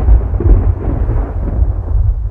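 Loud, deep rumble with a rough, noisy texture, heaviest in the low bass, its higher part slowly thinning out.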